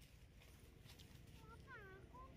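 Faint macaque vocalisation: a short call falling in pitch near the end, after a few faint rustling clicks about halfway through.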